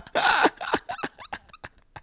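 Two men laughing hard: a breathy burst of laughter near the start, then short gasping pulses that trail off and grow quieter.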